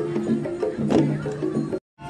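Garo long drums (dama) beaten in procession, one sharp stroke about every second and a quarter, under held low notes that step in pitch. It cuts off suddenly near the end.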